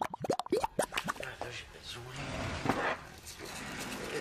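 Scene-transition sound effect: a quick run of short bloops, each falling in pitch, with clicks, in the first second, then a stretch of hissy noise around the third second.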